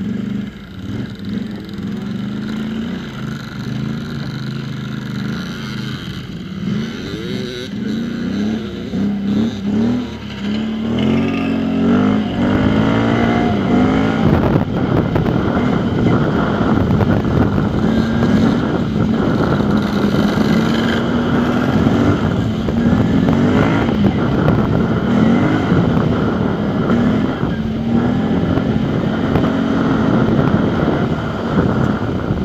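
Off-road vehicle's engine heard from on board while riding a dirt track, its pitch repeatedly climbing and dropping back with throttle and gear changes. From about eleven seconds in it gets louder, with a heavy rushing noise over the engine.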